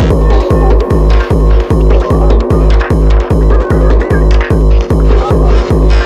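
Fast tekno (acid/freetekno) dance music: a heavy kick drum at about three and a half beats a second, each hit dropping in pitch, pounding under a dense, steady synth layer.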